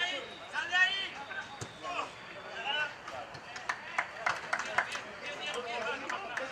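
Footballers' voices shouting and calling across an open pitch, with a run of sharp clicks a little past the middle.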